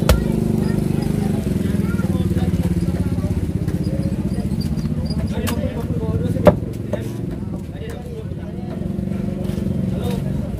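Heavy machete chopping through tuna onto a wooden chopping block: two sharp chops, one right at the start and one about six and a half seconds in. Under them runs a steady low engine drone.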